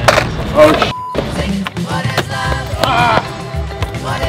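Skateboard at a concrete skatepark: wheels rolling and the board clacking on tricks, with a sharp impact just after the start and another about half a second later, under background music with a singing voice.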